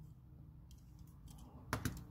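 Faint handling clicks of small die-cast toy cars, then a sharper click-and-knock near the end as a toy car is set down or picked up on the wooden workbench.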